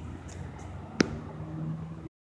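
A single sharp click about a second in over a low, steady outdoor background of distant road traffic, with a faint low hum setting in just after the click.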